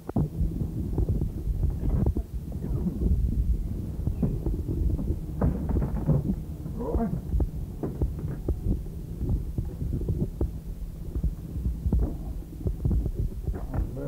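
Irregular low rumbling and thumping of a microphone being handled on a tape recording, over a steady electrical hum, beginning with a sharp click. Faint muffled voices come through about five to seven seconds in.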